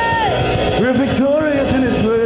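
Worship song sung into microphones over instrumental accompaniment. A held note fades just after the start, and a new sung phrase begins about a second in.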